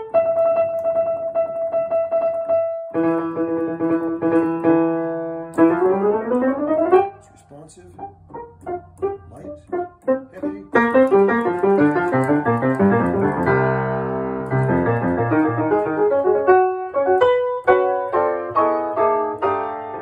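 Freshly rehammered and regulated 1898 Steinway Model C grand piano showing its fast repetition: one note struck rapidly over and over, then a second rapidly repeated note and a rising run. A passage follows that drops to quiet, sparse notes for a few seconds and then builds into full, loud chords.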